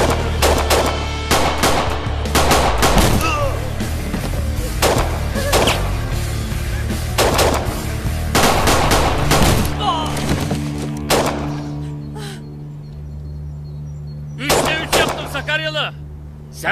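Gunfire exchange: rapid volleys of shots over the first eleven seconds or so, with a low, steady music bed underneath. The shooting dies away, then a short burst of shots comes near the end.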